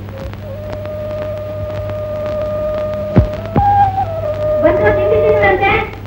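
Film background music: one long held note that steps up in pitch a little past halfway, then a wavering run of notes near the end. Under it run the steady low hum and scattered crackle of an old optical soundtrack.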